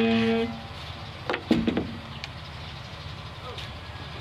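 A short held pitched tone cuts off about half a second in. About a second later comes a loud knock with a brief ring from the strings as the acoustic guitar is handled and set down.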